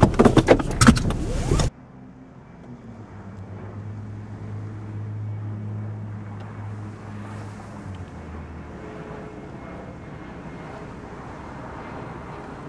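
A loud burst of dense noise cuts off abruptly under two seconds in. It leaves a parked car's engine idling with a steady low hum, which steps down in pitch about two-thirds of the way through.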